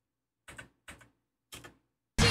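Three short, faint clicks at a computer, each a quick double tick, as the paused music video is set playing again.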